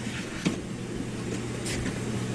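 Steady low hum of store background noise, with a short soft knock about half a second in.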